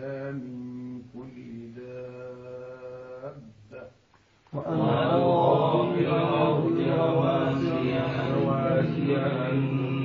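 A man reciting the Quran in the melodic tajweed style, drawing out long held notes. The recitation breaks off about four seconds in and resumes louder after a short gap.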